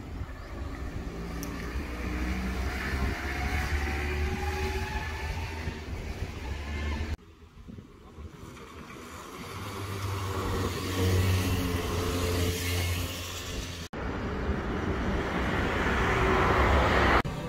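Go-kart engines running on a track, one rising in pitch as it speeds up in the first few seconds. The sound drops abruptly about seven seconds in, then builds again as karts run on.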